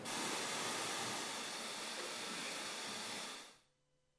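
Steady white-noise hiss from a courtroom's sidebar masking system, turned on to keep a bench conference from being overheard. It cuts in suddenly and fades out after about three and a half seconds.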